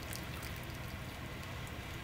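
Dashi dripping and trickling from a paper-towel-lined mesh strainer into a glass measuring jug, left to drain without squeezing. A steady patter of small drips.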